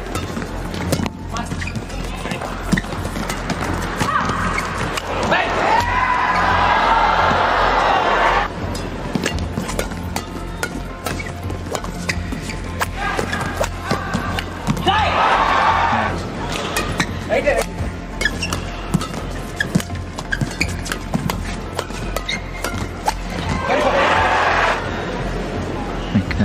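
Badminton rallies: racket strikes on the shuttlecock as a run of sharp clicks, with the arena crowd cheering in three swells after points, about six seconds in, around fifteen seconds and near the end.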